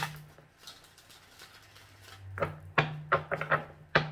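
A tarot deck being shuffled by hand: a short rush of riffling cards at the start, a lull, then a run of quick card snaps and taps over the last second and a half.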